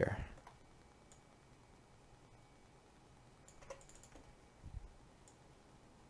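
A few faint clicks from a computer keyboard and mouse, bunched a little past the middle, followed by a soft low thump, over a quiet room.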